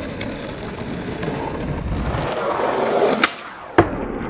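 Skateboard wheels rolling over pavement, growing louder, then a sharp crack about three seconds in. The rolling drops away briefly before a louder slap near the end: the board is popped for a trick and landed.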